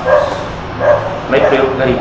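A person speaking in short, quick syllables. No machine or other sound stands out.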